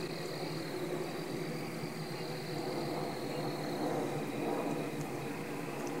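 Steady night-time outdoor background: a constant low hum with a thin, high-pitched tone over it that drops out briefly about a second in.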